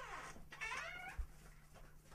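Two short, faint, high cries: the first falls in pitch, the second rises and falls, over a low steady hum, with a soft thump about a second in.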